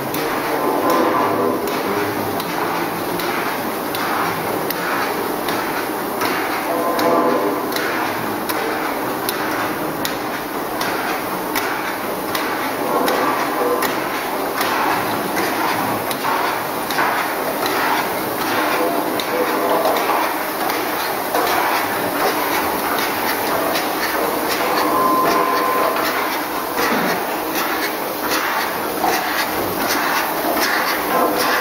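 Rotary egg breaking and separating machine running: its stainless steel cracker arms and cups click and clatter in a steady, regular rhythm as eggs are fed in, cracked and split.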